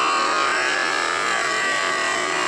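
Cartoon sound effect of spinning circular saw blades: a steady high whine that wavers slightly in pitch.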